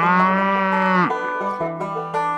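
A cow mooing once, one long call that ends about a second in, over banjo music.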